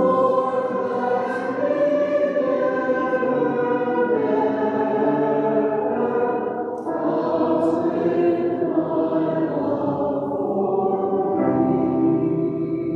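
A group of voices singing a hymn, accompanied on grand piano, with a short break between phrases about 7 seconds in.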